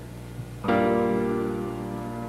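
A short lull, then a keyboard chord struck about two-thirds of a second in and held, slowly fading, in a live doo-wop ballad.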